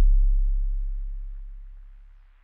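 A deep electronic bass note, the last note of a song, dying away steadily.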